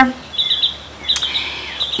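A bird chirping: two short runs of quick, high chirps close together.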